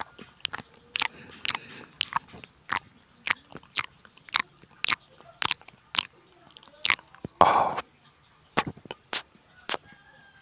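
Close-miked chewing of chicken in chili sambal with rice: sharp wet mouth smacks and crunches, about two a second, with one longer, louder burst about seven and a half seconds in.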